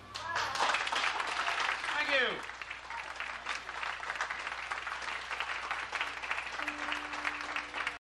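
An audience applauding right after a song ends, the clapping steady throughout. About two seconds in, one voice gives a whooping cheer that falls in pitch.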